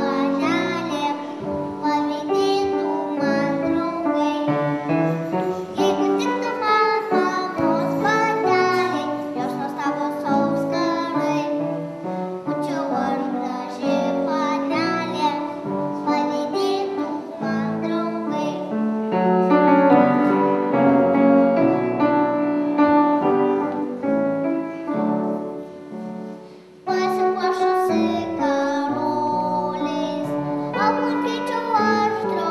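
A young girl singing a song solo with grand piano accompaniment. Just before the end the sound dips low, then cuts back in abruptly at full level with more singing and piano.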